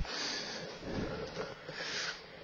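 A person breathing: a few noisy breaths with no voice.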